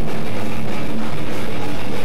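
A rock band playing live and loud: electric guitar and drum kit.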